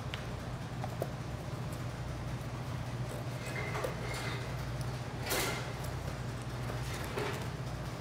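Cardboard box being cut and handled: a few faint scrapes and knocks over a steady low hum, the loudest a short scrape about five seconds in.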